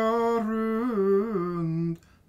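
A solo male voice chanting Icelandic rímur, unaccompanied. It holds one long note, then falls lower with small turns in pitch and breaks off at the end of the phrase.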